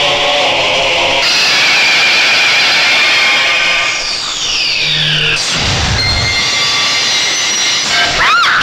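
Tense film soundtrack: a dense, harsh wall of dissonant music and sound effects. Falling sweeps come in about four seconds in, then a low rumble around six seconds.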